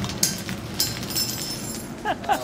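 Food frying in hot ghee in a pan on a gas range, a steady sizzle, with two sharp clicks in the first second.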